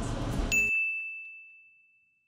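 A single bright bell ding about half a second in, one clear tone that rings out and fades away over about a second and a half. The room sound beneath it cuts off just after the ding starts.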